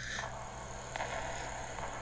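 Faint steady hum with a hiss over it: background room tone, with no music or speech.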